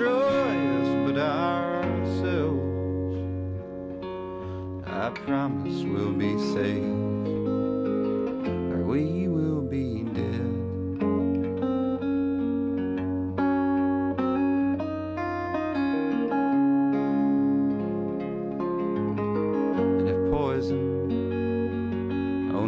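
Archtop guitar playing a slow instrumental passage of held, ringing chords, with a few brief wordless vocal notes gliding in pitch.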